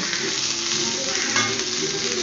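Cooked white rice sizzling steadily in a hot metal pan as a metal spatula stirs and turns it.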